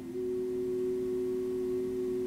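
Background music: a single steady sustained note starts just after the opening and holds without fading, over a lower steady drone.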